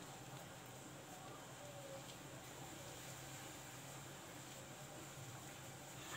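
Near silence: faint steady room tone with a low hum, and no distinct sounds.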